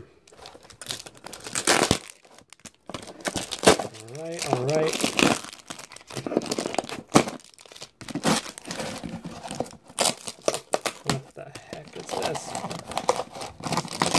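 Plastic trading-card pack wrappers crinkling and cardboard tearing as packs glued inside a cardboard box are peeled off it, in a string of short crackles and rips.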